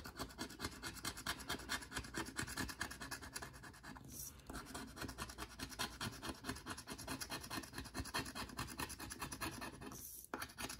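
A coin scraping the scratch-off coating from a lottery ticket in rapid, repeated back-and-forth strokes, with a short pause about four seconds in.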